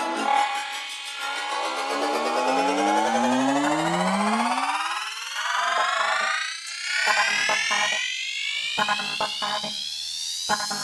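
Electronic dance music build-up: layered synthesized tones sweep steadily upward in pitch with the bass gone, and chopped rhythmic stabs come in about halfway through.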